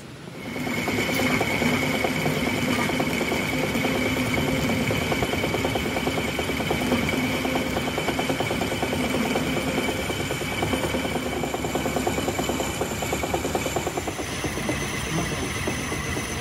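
Metal lathe starting up about half a second in and running steadily with a constant whine, while a tool bit cuts the end of a steel shaft held in the chuck. The whine changes pitch near the end.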